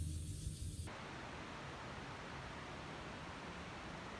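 Faint, steady hiss of outdoor background noise, with a low hum that stops about a second in.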